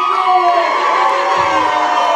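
Concert crowd cheering and shouting, many voices yelling over one another, in answer to a call-out from the stage.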